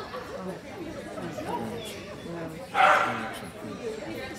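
A dog barks once, loud and short, about three seconds in, over people's low chatter.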